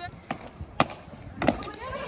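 Two sharp impacts, the first a little under a second in and the second about half a second later: a freerunner's feet landing on a low brick planter wall after a running jump.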